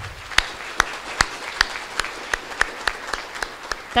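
Audience applauding, with one set of claps close to the microphone standing out at about three a second.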